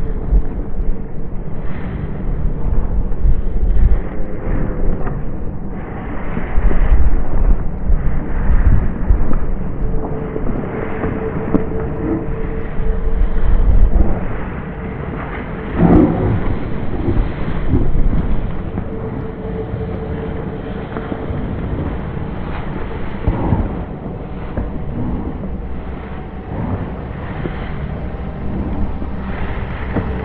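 Gusty, low rumble of wind buffeting the microphone, rising and falling in irregular bursts.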